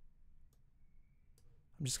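Faint computer mouse clicks, three of them spaced about half a second to a second apart, as cells in a software step sequencer are clicked. A man's voice begins near the end.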